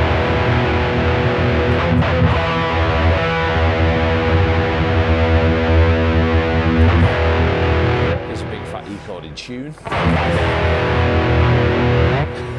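Ibanez RG5170B electric guitar through a Laney amp with a heavily distorted tone: a big E chord strummed and left to ring for about eight seconds as it slowly fades, then struck again about ten seconds in.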